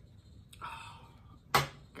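A woman's breathy inhale, then one short, sharp cough about a second and a half in, a cough from her cold.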